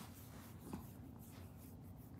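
Faint soft rubbing of a hand stroking a dog's fur against a blanket, with one short small sound about three quarters of a second in.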